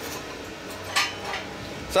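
A freshly cut steel plate clinking and scraping against the steel slats of a plasma cutting table as it is lifted, with one sharper clink about a second in.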